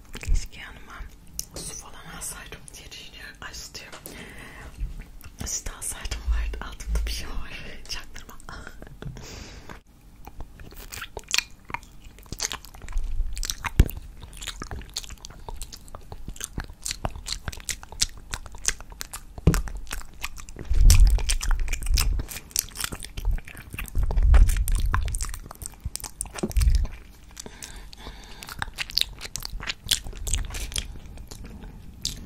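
Close-miked wet mouth sounds of licking and sucking a hard candy cane: a dense run of small wet clicks and smacks, with a few low thumps against the microphone.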